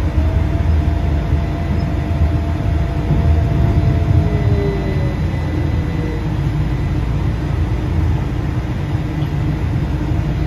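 Ride inside a transit vehicle moving along a city street: a steady low rumble of engine and road, with a faint whine that holds level and then slides down in pitch about halfway through.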